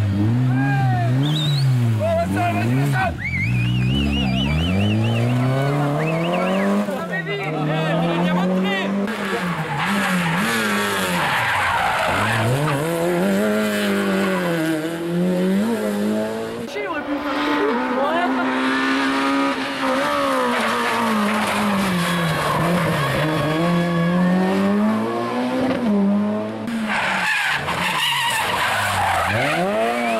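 Rally car engines revving hard and falling away again and again as cars brake, change gear and accelerate through a tight hairpin, with tyre squeal and skidding.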